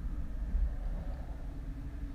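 Low, steady background rumble with a faint steady hum underneath, and no speech.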